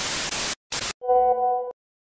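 TV static sound effect: two bursts of harsh hiss, the second short, cutting off abruptly. About a second in comes a brief steady pitched tone with overtones, the loudest sound, lasting under a second.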